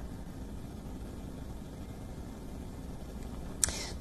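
Low steady hum and faint hiss of a remote broadcast audio line, with no speech. A short burst of hiss near the end, like a quick intake of breath.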